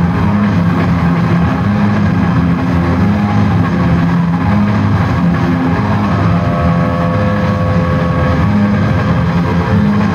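Live blues-rock trio of electric guitar, bass and drums playing an instrumental passage, with a dull, bass-heavy sound. Sustained guitar notes ring out a little past the middle.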